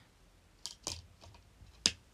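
A few small clicks and taps of fingers handling a Blu-ray disc on its clear plastic hub tray in a steelbook case. The sharpest click comes near the end.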